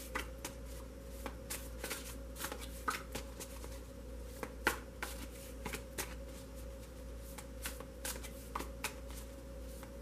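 A tarot deck being shuffled by hand: soft, irregular card clicks and slaps throughout, over a steady low hum.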